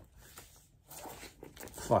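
Faint rustling and crinkling of the plastic wrapping on a sealed vinyl LP being picked at by hand, louder in the second half.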